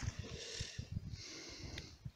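Wind buffeting the microphone in low, uneven gusts, with a soft hiss of water splashing around a landing net in the lake from about half a second in to just past one second.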